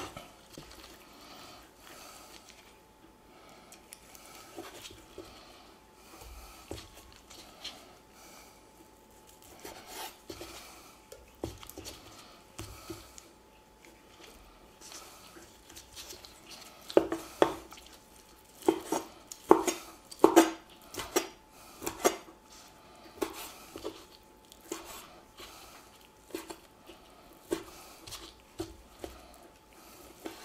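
Chef's knife slicing tender braised beef short ribs on a wooden cutting board, the blade knocking on the board. The cuts are faint at first; about halfway through the knocks turn louder and come one or two a second.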